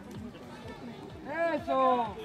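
Shouting from the sideline of a youth rugby match: one loud shouted call near the end, over low chatter from the spectators.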